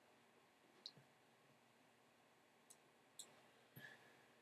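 Near silence with about four faint computer mouse clicks spread through it.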